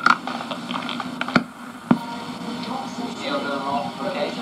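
An old home recording played back through a stereo's speaker: a steady low hum with several sharp clicks in the first two seconds, and faint voices coming in near the end.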